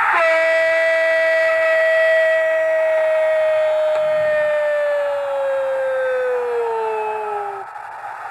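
A football commentator's long drawn-out goal cry, 'gooool', one held note of over seven seconds that slides gently down in pitch and fades toward the end before breaking off.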